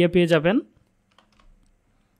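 A man's speech trails off in the first half-second, followed by a few faint keystrokes on a computer keyboard.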